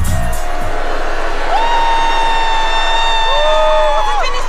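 The pop backing track stops and two young female singers hold a long final note. A second, lower voice joins in harmony about three seconds in, over a cheering crowd.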